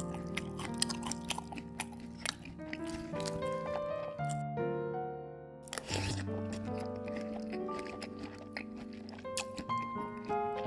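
Background music with a steady melody, overlaid with repeated crunchy chewing and biting sound effects. The chewing pauses briefly about halfway through, then resumes in a loud burst.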